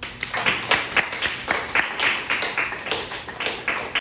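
Small audience applauding: a roomful of hands clapping, a few claps a second standing out above the rest.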